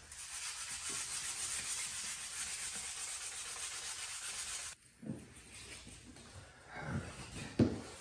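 Hand sanding with 320-grit sandpaper on the painted lip of an aluminium wheel rim: steady back-and-forth rubbing to level the high spots of paint filling the curb-rash grooves. The rubbing stops abruptly about five seconds in, followed by a few brief knocks, the sharpest near the end.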